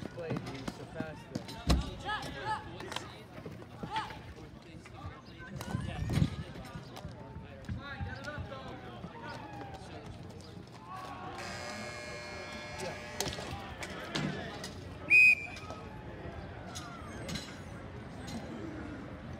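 Ball hockey play: sharp clacks of sticks striking the ball, with players calling out throughout. A referee's whistle gives one short, sharp blast about three-quarters of the way through, the loudest sound.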